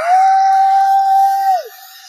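A single loud, pure held tone that slides up into pitch, holds steady for about a second and a half, then slides sharply down as it cuts off.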